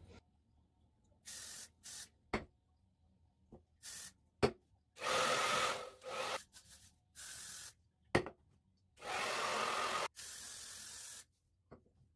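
A string of short hissing bursts from a hairspray aerosol can and a hair dryer running on cool and low, most under a second and a couple about a second long, with silences between. A few sharp clicks fall between the bursts.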